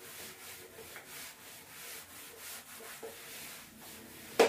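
Chalkboard duster rubbing chalk off a blackboard in quick back-and-forth strokes, a few swells of scratchy hiss per second, fairly quiet.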